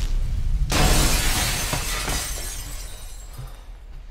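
A glass balcony door shattering as a man crashes through it, a sudden loud smash about three-quarters of a second in, then shards tinkling down as it dies away over about two seconds.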